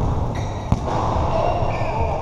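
A basketball bouncing on a hard court, with one sharp bounce a little under a second in.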